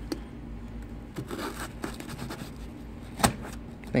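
Light handling sounds from a folding knife and a cardboard box: soft scraping and rustling with a few small clicks, and one sharper click about three seconds in, over a low steady hum.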